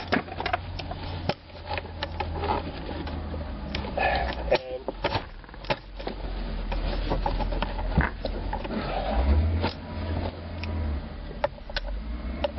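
Scattered, irregular clicks and knocks of plastic steering-column trim and a small socket tool being handled while a cover screw is worked, over a low steady hum.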